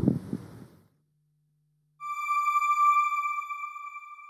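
A single sustained electronic chime, one clear ringing tone with overtones, starts about halfway through and slowly fades: the news channel's closing logo sting. Before it, the last words of the narration end, then a second of silence.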